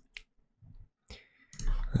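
Three short, sharp computer mouse clicks in the first second or so, with near silence between them.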